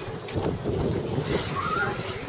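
Freeline skate wheels rolling on rough concrete: a steady rumbling noise.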